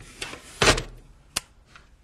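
A plastic disposable oxygen cartridge sliding down into the outer housing of an OxySure 615 oxygen generator: a scraping rustle, then a dull thump as it seats just past half a second in. A single sharp click follows about a second and a half in.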